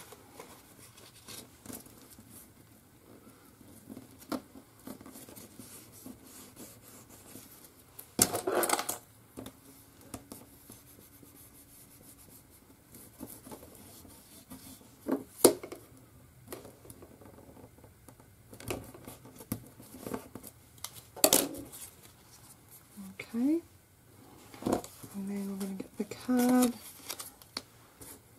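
Hands handling paper and card on a cutting mat: quiet rustling and sliding, broken by a few sharp clicks and taps as pieces and tools are picked up and set down.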